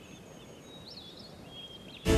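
Faint background ambience with a few soft, high bird chirps and whistles over a low hiss, one quick rising-and-falling chirp about a second in.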